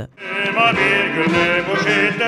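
Voices singing a slow national anthem with vibrato, starting a moment in.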